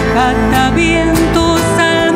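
Live ensemble music with a bowed cello playing a melody with vibrato over sustained low notes.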